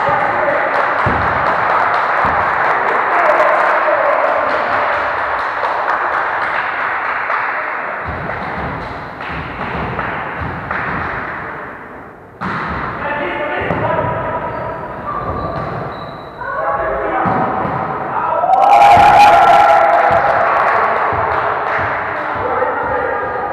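Volleyball being struck and thudding on the floor of a large gym, several sharp knocks, over a constant babble of players' voices and calls.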